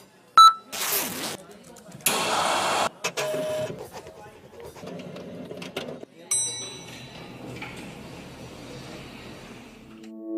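A short electronic beep, then bursts of noise, the longest about two seconds in; just after six seconds a chime rings with several high tones, over a low murmur of voices.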